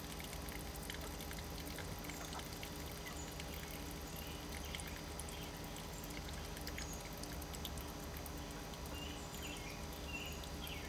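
Small drive motor of a PLC-controlled chicken waterer slowly tipping its water container, running with a steady low hum and a faint pulsing tone. Faint bird chirps near the end.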